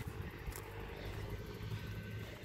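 Faint, steady low rumble of distant road traffic, with a brief click about half a second in.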